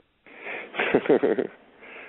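Laughter: breathy exhalations, then a short run of pitched laughing near the middle.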